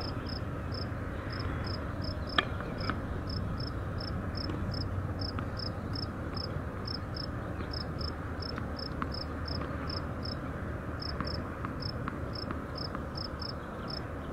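An insect chirping steadily, about three short high chirps a second, over a low steady background rumble. A single sharp knock stands out about two and a half seconds in, with a few fainter clicks later.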